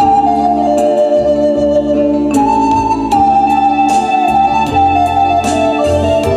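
Recorder played at a microphone: a melody in two phrases, each starting high and stepping down, over sustained organ-like keyboard chords, a bass line and light percussive ticks.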